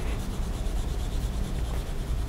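Graphite pencil shading on drawing paper, the lead rubbing steadily back and forth across the sheet.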